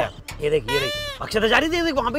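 A bleating call, pitched and falling, about a second in, mixed with speech.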